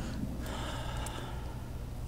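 A short audible breath from a man pausing before he answers, over a steady low hum.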